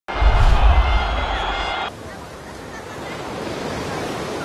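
A short broadcast intro sting with heavy bass and a few held high tones, cutting off abruptly about two seconds in. It gives way to the steady wash of surf and wind on a beach.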